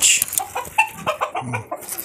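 Light Brahma chickens clucking in a string of short, scattered calls.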